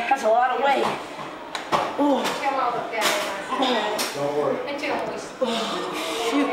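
Indistinct voices talking, with a few small clicks.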